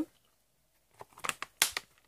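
Clear hard-plastic stamp case being handled and shut: a few sharp clicks and taps in the second half, the loudest about one and a half seconds in.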